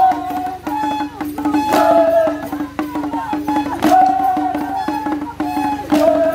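Traditional Acholi Bwola dance music: small hand-held drums beaten in a quick, steady rhythm under chanting voices.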